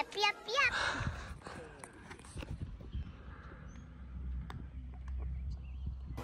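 A cartoon character's voice from an inserted animated-film clip for about the first second, then quiet outdoor ambience with a low rumble.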